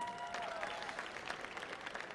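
Audience applauding: a steady patter of many hands clapping, fairly light.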